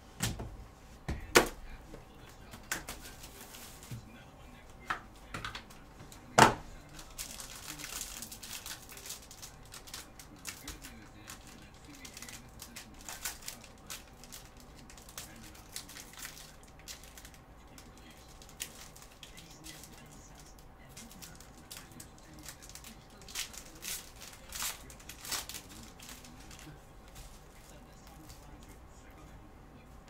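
Gloved hands handling plastic card holders and packaging: scattered sharp plastic clicks and knocks, two of them loud in the first seven seconds, with plastic wrap crinkling about eight seconds in and more clicking later on.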